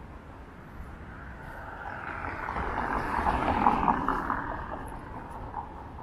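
A road vehicle passing along the street, its noise swelling to a peak about three and a half seconds in, then fading away.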